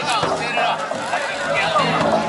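Many voices of the float pullers and crowd shouting and calling over one another as a yagura festival float is hauled along, with festival music and a few sharp strikes about a second apart.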